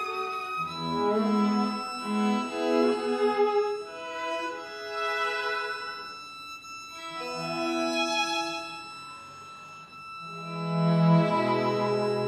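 String quartet playing sustained bowed notes in phrases that swell and fade, softening about nine seconds in, then swelling louder again.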